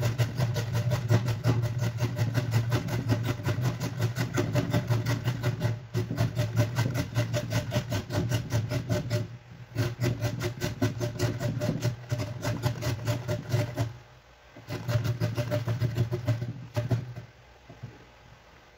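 Carrot being grated on the coarse side of a stainless steel box grater held upright on a plate: a fast, rhythmic rasping of several strokes a second. It breaks off briefly a few times and stops about a second before the end.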